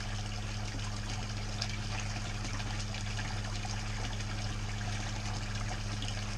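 Steady splashing of water pouring from pipe outlets into a pool pond, over a constant low hum.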